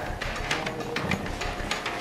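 Footsteps crunching on a debris-strewn floor, an irregular run of small clicks and crackles several times a second.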